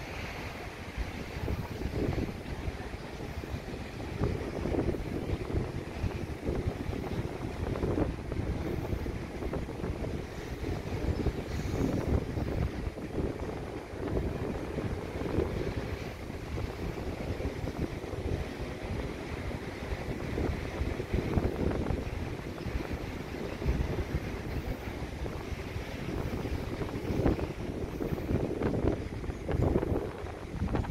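Wind gusting over the camera microphone, rising and falling every second or two, with the surf of small waves breaking on the beach beneath it.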